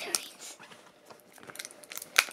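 Faint rustling and scattered sharp clicks of a small toy blind-bag packet being handled and worked at to open it, with a few clicks close together near the end.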